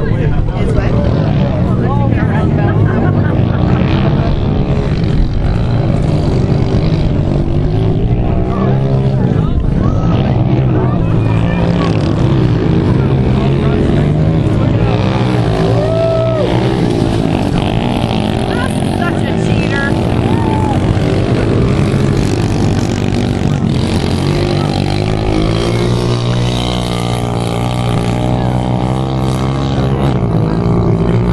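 Small pit bike engines running steadily for the whole stretch, their pitch stepping up and down with the throttle, with people talking over them.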